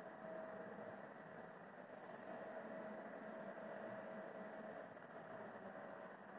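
Faint room tone: a low steady hiss with a thin, faint steady hum, and no distinct events.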